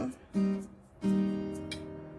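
Acoustic guitar background music: a chord plucked about a third of a second in and another about a second in, ringing on.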